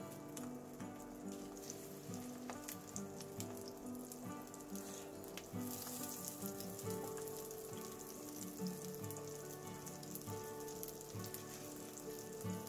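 Egg-battered beef slices (yukjeon) crackling and sizzling steadily in hot oil in a frying pan. Soft background music with slowly changing held notes plays underneath.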